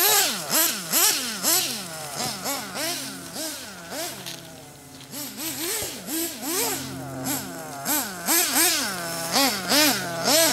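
Nitro RC buggy engine, an RB Fire-11 in a D8 being run in, revving up and down over and over as the car is driven. It fades toward the middle as the car gets farther off, then grows louder again near the end.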